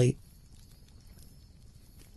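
The last syllable of a narrator's voice, then a faint background ambience bed with scattered soft clicks.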